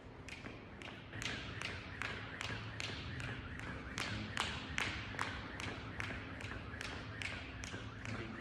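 A jump rope slapping a rubber gym floor in a steady rhythm, about two to three sharp ticks a second, as a man skips continuously.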